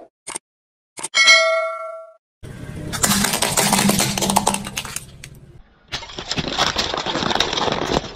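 Two quick clicks and a bright bell-like ding that rings and fades over about a second, the sound effect of a subscribe-button animation. Then a car tyre rolls over and crushes objects: dense crackling and crunching in two stretches, the second starting about six seconds in.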